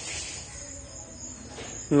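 Crickets chirring in the background: a high-pitched, on-and-off trill over a low, steady hiss.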